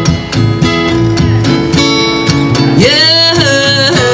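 Live performance with guitar strummed in a steady rhythm, and about three seconds in a melody line slides up into a held note.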